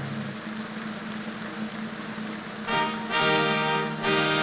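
Large audience applauding over a held low note of music; about two-thirds of the way through, louder orchestral music with brass comes in.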